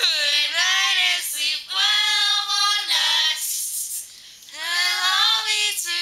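Young girls singing a camp song without accompaniment, with long held, sliding notes and a short break in the middle.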